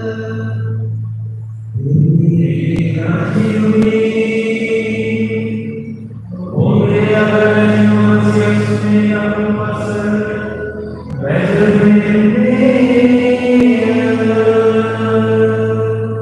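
A solo voice chanting long, held phrases in a liturgical chant through the church's microphone and speakers, over a steady low accompanying tone. There are three phrases, with short breaks about six and eleven seconds in.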